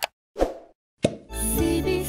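Animated button sound effects: a click, a pop and another click within the first second, then a short musical logo jingle with a sustained chord sets in about halfway through.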